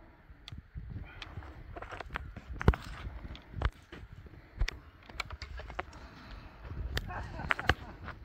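Footsteps moving through woodland undergrowth, with irregular sharp snaps and knocks; the loudest comes a little under three seconds in.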